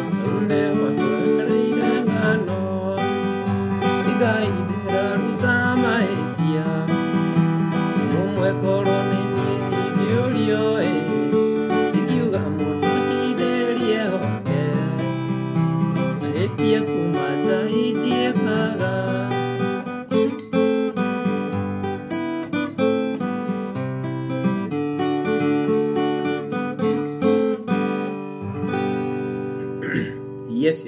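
Acoustic guitar playing a mugithi tune, strummed and picked in a steady, busy rhythm, with a brief break about twenty seconds in and the playing tailing off near the end.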